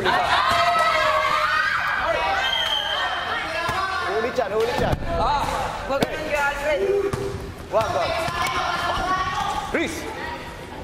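Basketball game on an indoor court: a basketball bouncing with sharp thuds on the hard floor, under players' and onlookers' shouting and calls.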